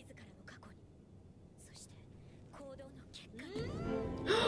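Soft speech in a few short phrases, a line of anime dialogue, then music swelling in near the end.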